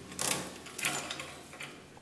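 A few light metallic clicks and rattles of a roller chain against a sprocket as it is worked by hand onto the go-kart's rear-axle sprocket, growing fainter toward the end.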